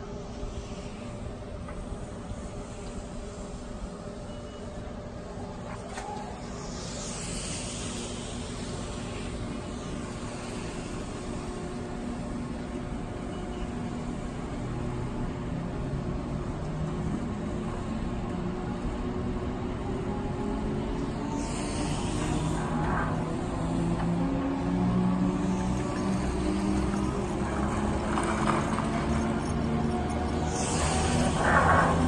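Detachable chairlift starting up: the drive's whine, several tones together, climbs slowly in pitch and grows steadily louder as the lift ramps up toward full speed.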